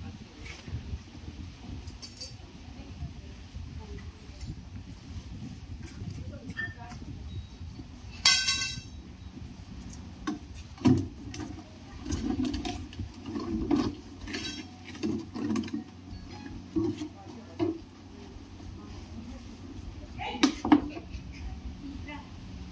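Knocks and clinks from a metal snake hook and a plastic jar on paving stones, with low voices in the background. The loudest clink comes about eight seconds in and another near the end.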